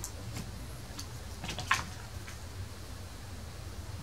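A few quiet clicks and rustles of cardboard packaging and small metal parts as a gold-plated Gotoh guitar tuning machine is lifted out of its box insert, over a steady low hum.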